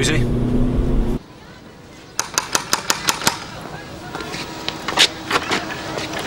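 A car's engine and road noise rumbling steadily inside the moving cabin, with a man's short laugh; the rumble cuts off suddenly about a second in. Then, much quieter, a quick run of sharp clicks and taps, with a few more near the end.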